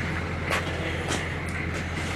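Military pickup truck's engine idling steadily, a low hum with a faint high whine over it, and three footsteps about two-thirds of a second apart.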